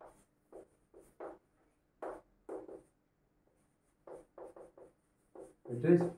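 Chalk scratching on a blackboard in about a dozen short, uneven strokes as a shape is drawn and its corners labelled. A man's voice starts right at the end.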